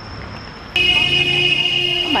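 A faint, steady chirring of insects; then, less than a second in, a loud, steady electronic tone of several pitches at once, like a buzzer or alarm, starts suddenly and holds.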